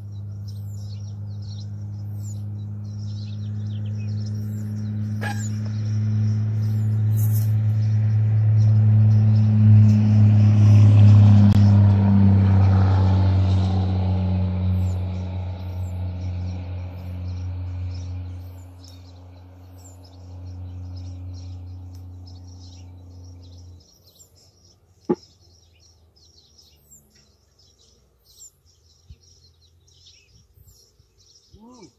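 A steady low engine hum grows louder to about the middle, fades, and cuts off sharply with a few seconds left, with small birds chirping throughout.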